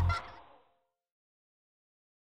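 The end of a children's song, with a cartoon seagull's cry, fades out within the first half second, then dead silence.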